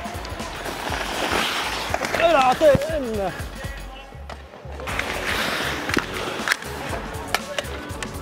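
Ice skate blades scraping and carving on rink ice, with a few sharp clacks of hockey sticks and puck in the second half. A player's voice calls out about two seconds in.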